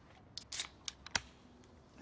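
A few short, sharp clicks and snips from a small object being handled, the loudest a little after a second in.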